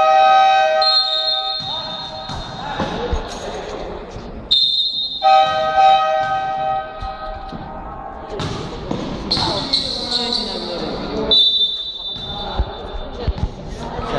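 A basketball bouncing on a court floor, with scattered thuds. A long steady tone with several overtones sounds twice, near the start and again around the middle, with shorter high tones in between.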